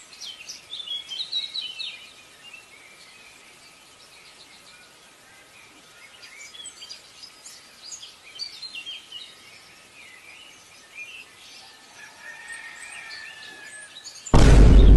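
Small birds chirping: quick high chirps in flurries, busiest in the first two seconds and again midway, over a faint steady hiss.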